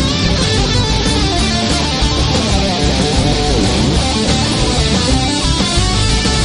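Electric guitar solo played live with a rock band, an acoustic guitar strumming underneath.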